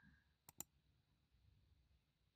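Near silence with two quick, faint computer mouse clicks about half a second in, a double-click.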